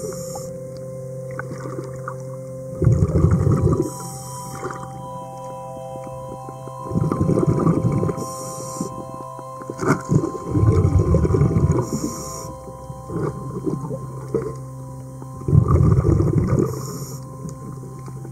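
Scuba diver breathing through a regulator underwater: a loud burst of exhaled bubbles about every four seconds, each lasting a second or so and followed by a short hiss.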